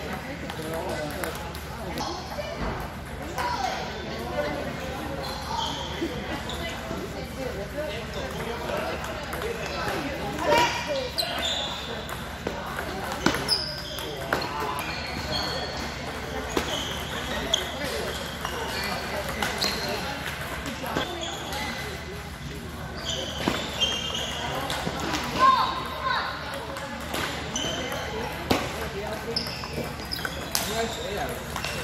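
Table tennis balls clicking off the table and paddles in quick rallies, the short ticks coming in irregular runs with a few louder smashes, over a steady background of voices chattering in the hall.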